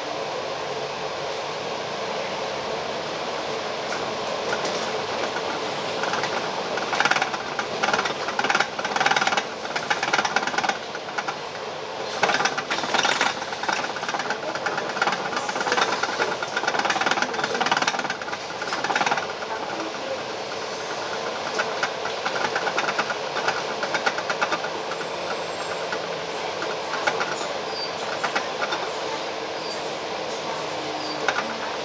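Cabin noise on the upper deck of a moving Volvo Olympian double-decker bus: a steady engine and road drone, with bouts of fast rattling and clatter from about six seconds in until about twenty seconds in.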